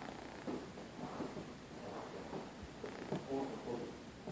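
A low voice speaking quietly in short, broken phrases, with a longer phrase a little after three seconds in.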